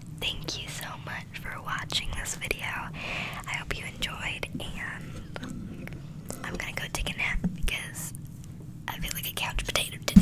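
A girl whispering close to the microphone, with many short sharp clicks through the whisper.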